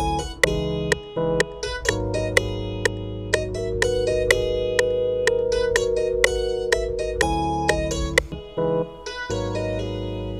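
Software lead guitar melody in A-flat minor, played on a MIDI keyboard as single plucked notes several a second. Beneath it run sustained Rhodes electric-piano chords and bass, which drop out briefly a few times.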